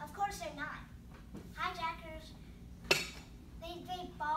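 Brief stretches of soft talk from people in a small room, with one sharp click or knock nearly three seconds in, the loudest sound.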